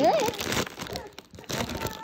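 Foil potato-chip bag crinkling as a hand opens it and reaches inside, loudest in the first second, with a brief vocal sound at the very start.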